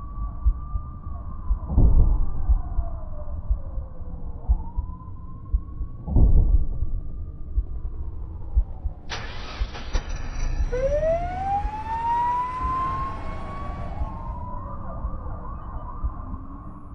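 Ambulance siren wailing, its pitch sweeping slowly up and down over a low rumble, with two heavy thumps about two and six seconds in. About nine seconds in a harsher hiss joins and a second wail rises steeply, the sound fading out at the end.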